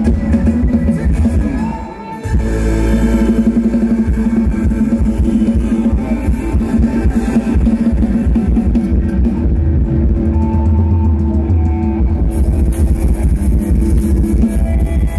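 Loud amplified band music with guitar and drums over a PA system. It dips briefly about two seconds in, then carries on steadily with a heavy bass line.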